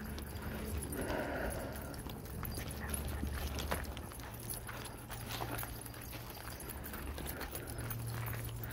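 Footsteps of a person walking on a packed dirt trail, landing about once a second, over a steady low rumble.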